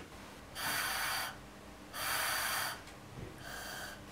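Breath puffed through a plastic tube into a homemade cardboard-and-balloon breath pressure sensor to test it: two breaths of under a second each, about half a second and two seconds in, then a fainter third near the end.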